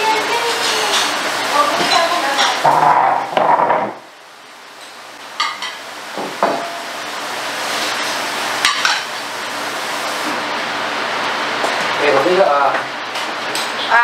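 Tableware being handled on a set dining table: a few sharp clinks and knocks of glasses, plates and bottles, with voices talking in the first few seconds and again near the end.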